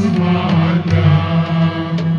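Music of low voices chanting in long held notes.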